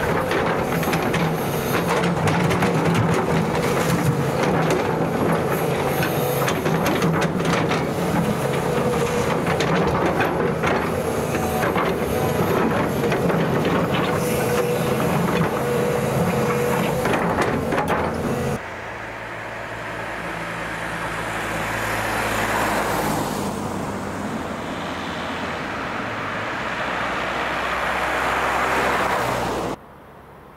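Volvo crawler excavator's diesel engine running steadily under load, with rapid metallic clicking and clanking over it. About two-thirds of the way through the sound cuts to a rushing road-traffic noise that swells and fades twice.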